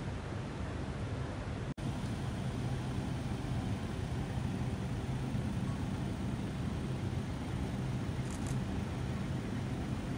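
Steady outdoor background noise with a low hum. It briefly drops out at a cut about two seconds in.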